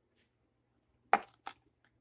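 Two short clinks of ceramic plant pots being handled, about a second in and again half a second later.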